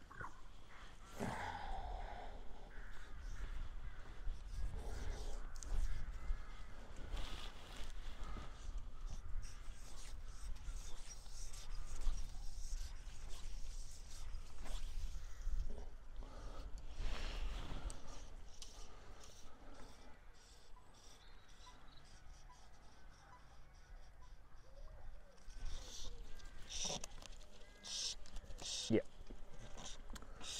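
Outdoor ambience with birds calling now and then, over a steady low rumble of wind on the microphone.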